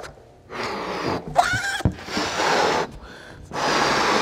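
A latex party balloon being blown up by mouth: several long breaths rushing into it, with a short pause for breath near the end.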